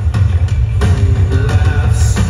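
Live rock band playing at full volume, with drum kit, bass and guitar and a heavy, booming low end, as heard from the crowd in front of the stage.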